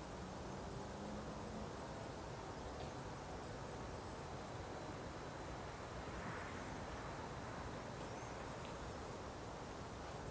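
Faint, steady background hiss with a thin high-pitched whine running through it, and no distinct sound events.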